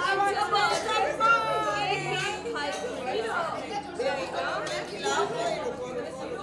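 A group of women chattering, several voices talking over one another.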